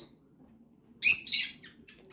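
Birds chirping: after a second of quiet, a quick cluster of short, high chirps.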